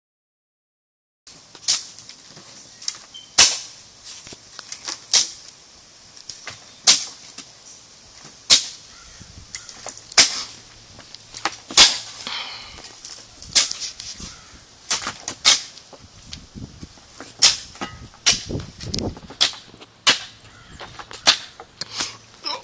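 Shovels digging into rocky soil: a sharp strike of the steel blade on dirt and stones with each stroke, about every second and a half, with fainter scrapes and knocks between.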